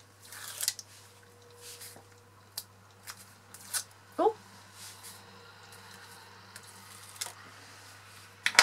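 Backing liner being peeled off double-sided adhesive tape on cardstock, heard as a handful of short rustles and crackles of the paper liner spread across the few seconds.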